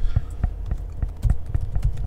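Computer keyboard being typed on: an irregular run of key clicks, about five a second, over a low steady hum.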